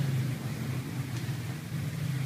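A steady low hum with a faint background hiss.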